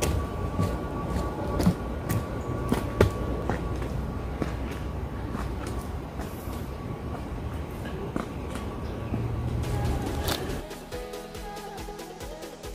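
Footsteps on a forest trail, about two a second, over a steady low rumble. Music starts near the end.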